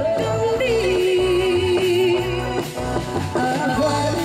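A woman singing into a microphone over instrumental accompaniment with a steady beat; about half a second in she settles on a long held note with vibrato, then moves on to a new phrase near the end.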